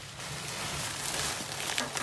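The crinkly fabric of a Therm-a-Rest NeoAir XTherm inflatable sleeping pad rustling as it is handled: a steady hiss that grows slightly louder.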